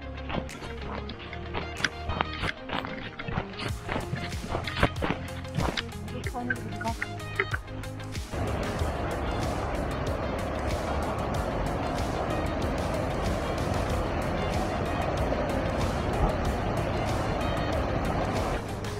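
Background music with a scatter of sharp cracks and snaps, like dry branches underfoot. About eight seconds in, a steady, louder rush of river water pouring through an old weir takes over, with the music still underneath.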